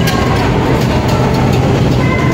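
Steady low mechanical hum and rumble of a large airport terminal, with a few light clicks through it.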